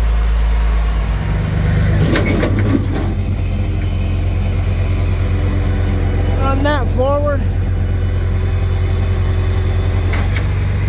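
Rollback tow truck's engine running steadily with the PTO engaged, driving the hydraulic pump while the control levers winch a car onto the bed. The engine note shifts about two seconds in, with a few metallic clanks.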